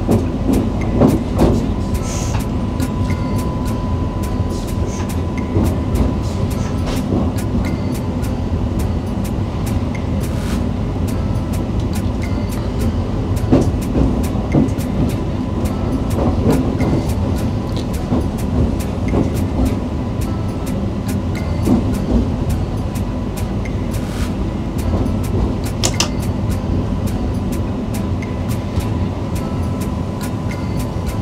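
Electric passenger train running on track: a steady low rumble with frequent sharp clicks, and a faint steady high tone in places.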